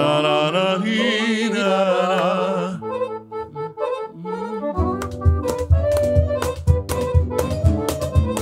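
Piano accordion playing a long, wavering held note, then shorter notes and chords. About five seconds in, a steady beat of bass and percussion joins as the band starts the song.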